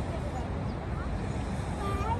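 Outdoor background noise: a steady low rumble with a few faint voices in the distance.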